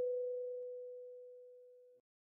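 A single kalimba note, the B4 tine, rings out and fades slowly after being plucked. It cuts off suddenly near the end.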